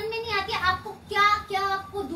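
A high-pitched raised voice in several short, drawn-out phrases, more sung or wailed than plainly spoken.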